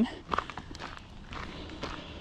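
A hiker's footsteps on a gravel trail at a walking pace, faint and irregular.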